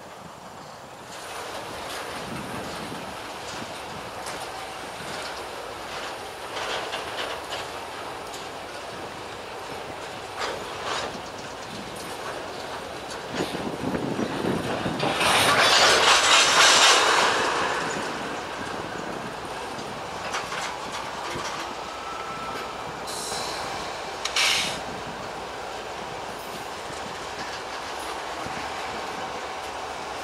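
Freight train rolling slowly past, with steady wheel noise and repeated clicks over the rail joints. About halfway through, a Kansas City Southern diesel locomotive running as a mid-train DPU passes, and its engine makes the loudest part. Near the end a faint wheel squeal sounds briefly.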